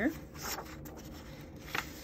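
Paper pages of a hardcover picture book being turned by hand: soft rustling, with two brief papery flicks, about half a second in and near the end.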